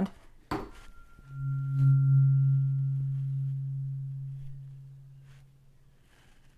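Weighted 136 Hz OM tuning fork struck with a light tap about half a second in, then humming one low steady tone that swells and slowly fades over about four seconds, with a faint high ring above it that dies sooner.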